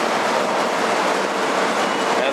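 A steady, loud rushing noise with no distinct events or rhythm.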